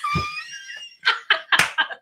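Two people laughing hard. A high, squealing laugh lasts about a second, then a quick run of breathy laughing bursts includes a snort.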